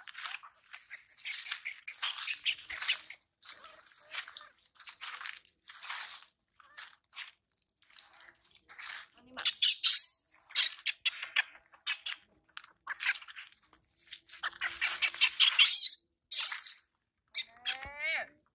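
Dry leaf litter rustling and crunching in irregular bursts as it is stepped on and disturbed. A short rising squeak comes near the end.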